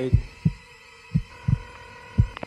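Heartbeat sound effect: low double thuds, about one beat a second. A faint steady high tone comes in about halfway through.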